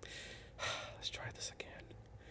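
Quiet breathing and faint whispering close to a microphone, in short breathy puffs with no voiced speech.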